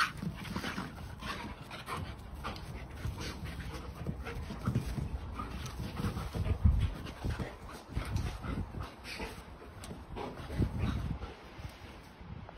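A German Shepherd and a Staffordshire Bull Terrier play-fighting: panting, with irregular bumps and scuffles as they wrestle and chase.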